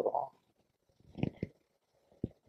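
A pause in a man's talk: quiet room tone with a few soft, short low sounds about a second in, such as small mouth or movement noises picked up by his lapel microphone.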